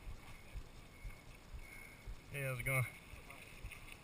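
Mountain bike rolling over a dirt singletrack trail, heard from a bike-mounted camera: a low, uneven rumble with small irregular knocks and rattles from the frame and tyres over the ground.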